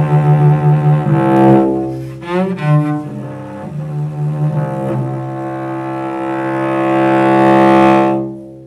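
Five-string cello playing slow sustained notes, several at once in double stops, with quick sliding notes about two seconds in. It then swells on a long held chord near the end.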